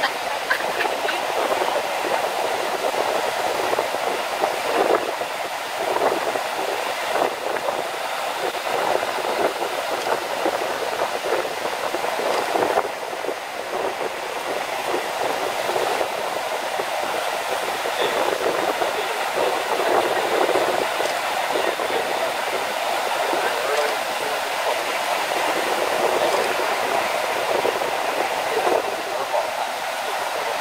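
Ocean surf breaking and washing over lava rocks at the shore: a steady wash of noise that swells and eases slightly.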